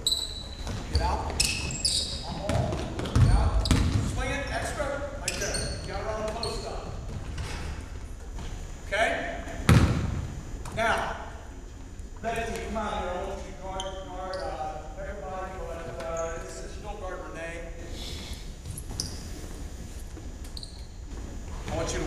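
Basketballs bouncing on a hardwood gym floor and sneakers squeaking as players run a drill, in a large echoing gym, with the loudest thuds about three and ten seconds in. Voices talk in the background through the second half.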